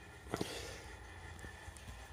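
A single short knock about a third of a second in, over faint room noise.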